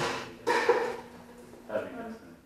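A sharp knock right at the start, followed by about a second of scraping, clattering noise.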